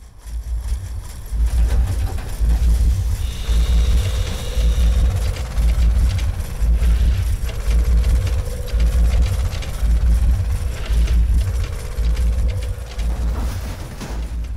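Heavy machinery engine running, with a deep chugging pulse about once a second and a wavering whine that comes and goes.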